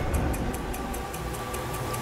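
Quick, even ticking like a clock over a steady low drone, a sound-design bed of the intro's soundtrack.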